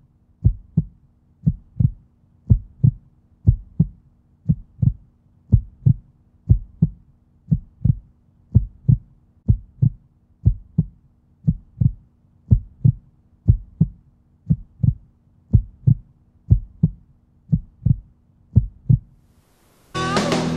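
A heartbeat sound effect on the soundtrack: low double thumps repeating steadily about once a second, over a faint steady hum.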